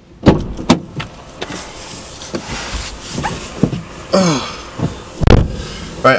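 A van's driver door opened with a loud clack, a person climbing into the driver's seat with rustling and shuffling, then the door shut with a heavy thud about five seconds in.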